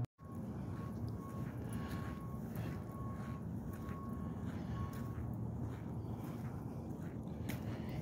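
Outdoor background noise, a steady low rumble, with faint footsteps through dry fallen leaves and grass.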